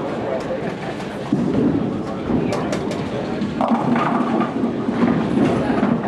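Bowling alley: a bowling ball rolling down the lane and then hitting the pins, with sharp clacks about two and a half seconds in and a clatter of pins after. Background chatter throughout.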